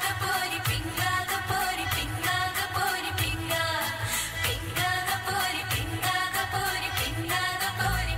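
An Indian song playing: a sung vocal line over a steady percussion beat and bass.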